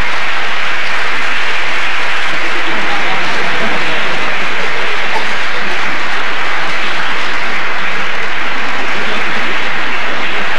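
Loud, steady applause from a theatre audience, without a break.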